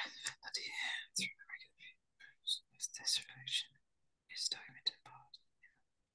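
A person's voice speaking very softly in short, broken snatches, close to a whisper.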